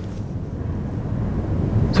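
Steady low background rumble of the room, with no voices.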